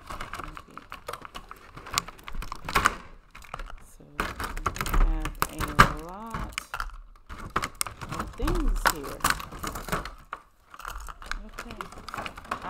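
Clear plastic packaging crinkling and clicking as pens and markers are pulled out of a moulded plastic tray and sleeve: a quick run of small sharp clicks and rustles.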